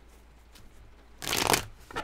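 A tarot card deck being shuffled by hand: one quick, loud flurry of cards about halfway through, then another brief rustle at the end.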